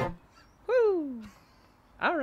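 The acoustic guitar and voice stop abruptly at the start. About two-thirds of a second in, a single voice call slides down in pitch for about half a second, then it goes quiet.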